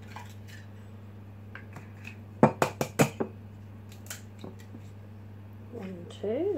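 Eggs cracked into a ceramic mug: a quick run of four sharp clinks against the mug about two and a half seconds in, then two more single clinks, over a steady low hum.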